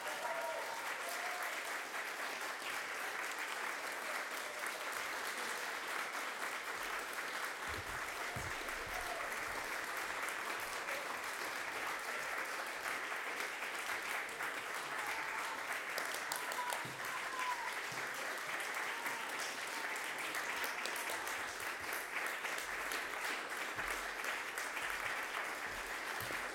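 Audience applauding steadily, with a few voices calling out above the clapping.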